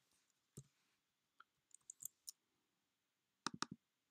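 Faint, sparse computer keyboard keystrokes and mouse clicks: one click about half a second in, a few light ticks around the middle, and a quick run of about four clicks near the end.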